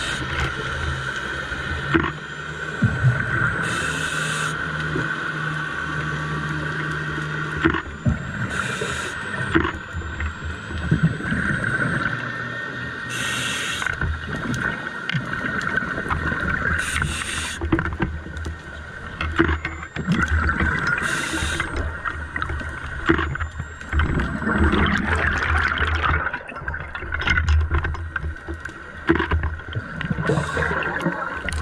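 A scuba diver breathing underwater through a regulator: a short hiss of inhalation every four seconds or so, then the rumbling, gurgling rush of exhaled bubbles, over a steady underwater drone.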